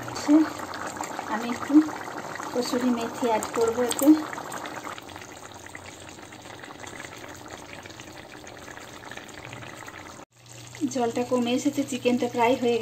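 Chicken curry gravy simmering in a kadai, a soft, steady bubbling hiss. A voice is heard in the first few seconds and again after a sudden cut near the end.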